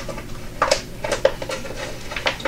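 Light clicks and crinkles come at irregular moments as hands press and bend a pliable, partly cured resin sheet against a textured glass bowl.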